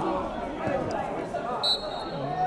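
Murmur of spectators' voices at a football ground, and near the end one short, shrill blast of the referee's whistle, the first of the three blasts that signal full time.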